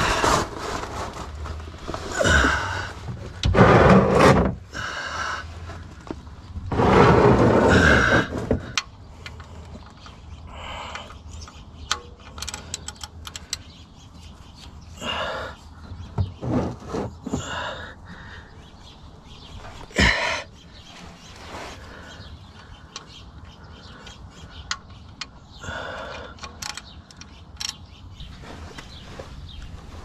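Hand work on a car's oil drain plug with a wrench: scattered small metal clicks and knocks as the plug is loosened, with a sharper click about twenty seconds in, and two longer, louder noisy stretches in the first nine seconds.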